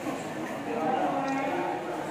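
Indistinct voices of other people talking in a large indoor hall, including a drawn-out vocal sound, over a steady background murmur.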